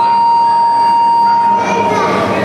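Wrestling scoreboard buzzer sounding one long steady tone that cuts off near the end, signalling the stop of the bout.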